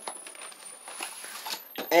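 Faint light clicks and rustles of handling, with a woman's voice starting near the end.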